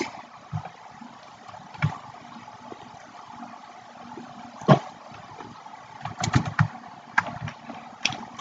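Computer keyboard and mouse clicks over a faint steady background hiss: a few scattered clicks, then a quick run of keystrokes near the end as code is typed.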